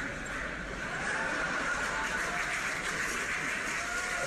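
Studio audience applauding and cheering on a television talk show, played through the TV's speakers and picked up by a phone; a steady, dense crowd noise with no clear words.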